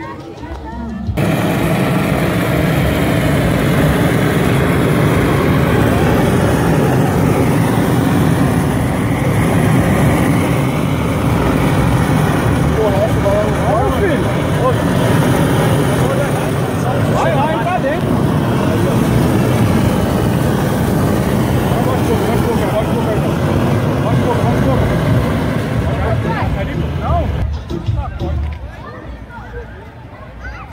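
Gas torch burner running in one long, loud, steady blast, heating the air to inflate a large paper balloon. It cuts in about a second in and stops just before the end.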